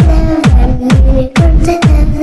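Electronic dance music: a heavy booming kick drum that drops in pitch on each hit, a little over two beats a second, under a held synth tone.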